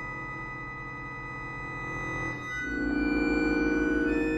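Solo accordion holding sustained chords. About two and a half seconds in, a new, louder chord enters and pulses fast and evenly.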